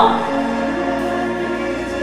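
Live pop concert music: a female singer's falling note ends at the start, followed by sustained, held chords.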